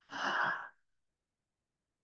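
A woman's deep, breathy sigh lasting under a second.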